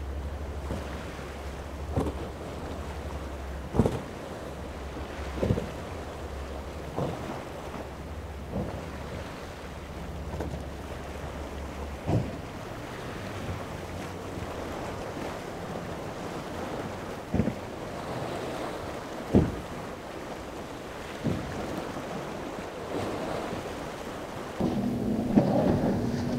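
Boat with quad outboard motors running through choppy inlet waves. A low engine drone fades out about halfway through, under the noise of waves and wind buffeting the microphone, with a short thump every second or two.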